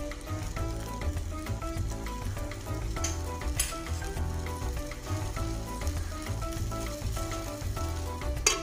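Ginger-tamarind sauce boiling in a stainless-steel wok, bubbling and sizzling steadily, with two sharp ticks about three seconds in. Background music plays over it.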